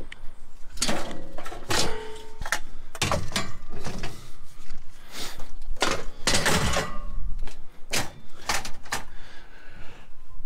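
Scrap metal being loaded and shifted about in a pickup truck bed: a run of clangs, knocks and scrapes of metal pieces against each other and the bed, some ringing briefly.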